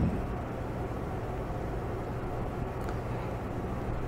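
Steady low hum with an even hiss: the room's background noise, unchanging throughout.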